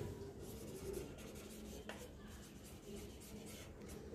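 Faint sound of a marker pen writing on a whiteboard, with one light tick about two seconds in.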